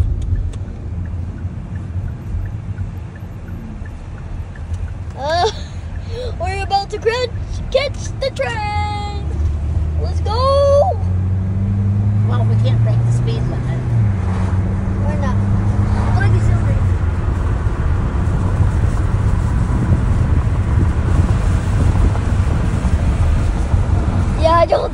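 Car engine and road noise heard from inside the cabin as the car accelerates along the road. The engine note climbs for a few seconds in the middle and drops back about fourteen seconds in, then the steady rumble carries on.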